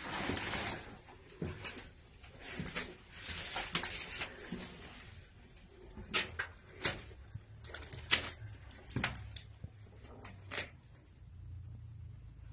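Footsteps going down a stairway, with irregular scuffs and crunches on gritty steps and debris.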